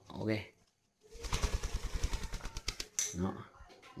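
Spotted dove flapping its wings in a rapid flurry of about ten beats a second for nearly two seconds as it flutters on a wire fan-guard cage.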